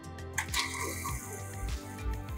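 FRC robot's flywheel shooter firing a foam ring note straight up: a click about half a second in, then a steady whirring rush that stops near the end.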